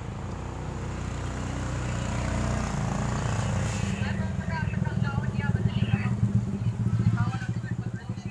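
A motor vehicle engine running close by, a low pulsing rumble that grows louder over several seconds and drops away near the end.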